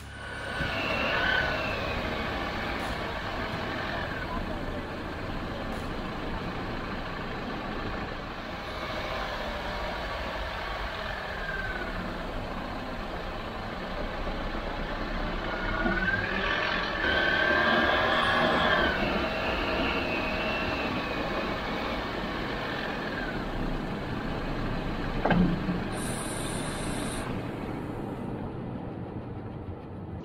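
Jeep Wrangler JL driving over a rough dirt trail: engine running steadily under tyre and gravel noise, with higher squeals and creaks coming and going and one sharp knock about 25 seconds in.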